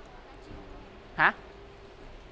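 A single short spoken interjection, "hả?", about a second in, its pitch dipping then rising. A faint steady hum runs underneath.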